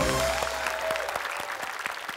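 Studio audience applauding, many hands clapping unevenly. A short music sting fades out just after the start.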